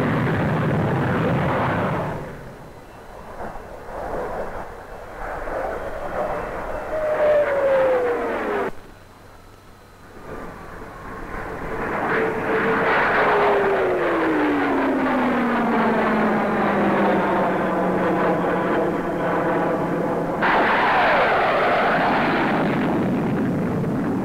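Supermarine 510 jet fighter's turbojet flying past in a few passes, with loud jet noise and sudden cuts between shots. A short falling whine comes about a third of the way in and breaks off abruptly. Then a longer pass follows, its whine sliding steadily down in pitch as the aircraft goes by, before the sound changes suddenly near the end.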